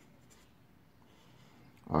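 Red marker pen writing digits on paper and drawing a short line under them, a faint scratching. A voice starts right at the end.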